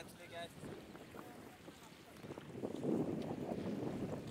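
Wind buffeting the microphone, faint at first and building over the last second and a half. A brief voice at the very start.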